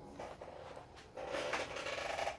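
Handling noise: rubbing and shuffling as the ukulele is held and moved. It comes in two stretches, a short one just after the start and a longer, louder one from about a second in.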